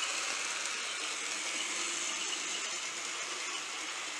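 Rivarossi Boston & Albany Hudson model steam locomotive running along the track: a steady mechanical running noise from its electric motor, gearing and wheels on the rails, easing slightly near the end as it moves off. It runs evenly, a nice runner in its owner's words.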